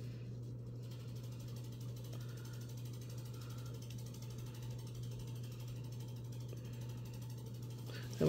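A steady low hum with faint room noise and no distinct strokes or clicks.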